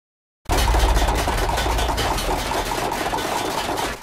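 Dead silence, then about half a second in a loud, steady low rumble with a dense noisy wash over it starts abruptly. It drops away just before the end: the opening sound of a film soundtrack.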